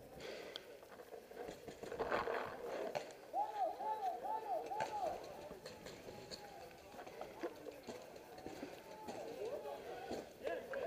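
Distant shouting voices, including four repeated arching shouted calls about three and a half to five seconds in, with a few faint sharp ticks.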